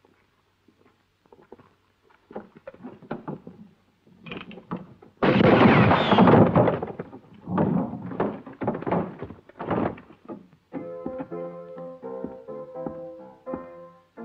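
Film sound effects: scattered knocks and thuds, then a sudden loud blast about five seconds in, followed by several more hard hits. Music comes in about three seconds before the end.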